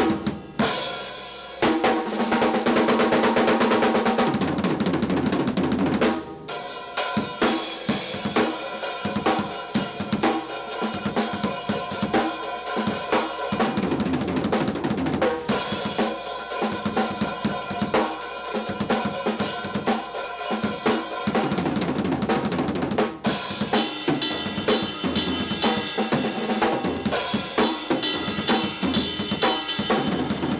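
A Pearl EXR drum kit played in a solo: fast strokes on snare, toms and bass drum mixed with crash, ride and hi-hat cymbals. The playing breaks off briefly about six seconds in and again about 23 seconds in.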